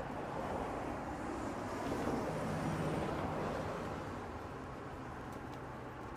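Road traffic on a bridge: a steady wash of car engines and tyres with a low engine hum, swelling a little between about two and three and a half seconds in.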